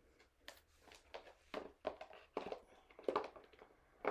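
Oracle cards being shuffled by hand: an irregular run of soft slaps and flicks of card stock, a few each second.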